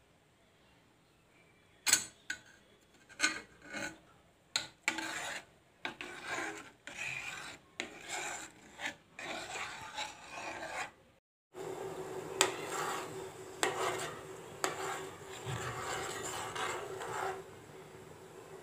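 A steel spoon scraping and clinking against a metal pot as milk is stirred while it curdles for paneer, in a string of sharp, irregular scrapes. After a short break partway through, the scraping goes on over a steady low hum.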